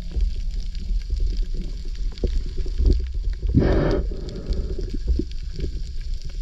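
Underwater sound through a camera housing: a steady low rumble with faint scattered clicks, and one gurgling burst of a scuba diver's exhaled bubbles a little past halfway.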